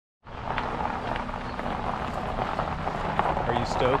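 Steady outdoor background noise with a low rumble beginning just after the start, and a brief spoken question, "Stoked?", near the end.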